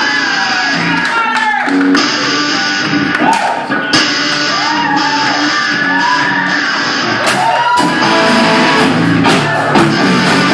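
Live rock band with several electric guitars, bass and drum kit playing together, loud and steady. A high melody line repeatedly swoops up and down in pitch over the rhythm, with a few sharp cymbal-like hits.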